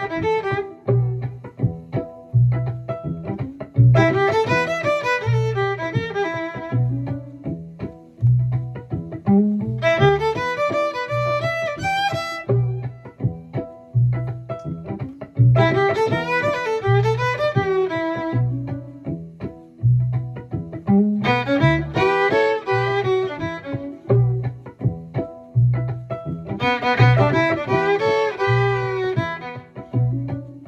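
Solo fiddle playing six short bluesy phrases in E, each two to three seconds long, with gaps of a few seconds between them for the listener to echo. Under it runs a backing groove with a steady, even low pulse.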